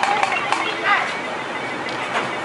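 High-pitched voices of young children talking over steady outdoor street noise, with a couple of sharp clicks, one about half a second in and one near the end.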